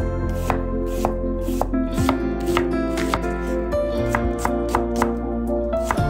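Chef's knife slicing an onion on a wooden cutting board: crisp, irregular knocks of the blade through the onion onto the board, about two a second, over background music.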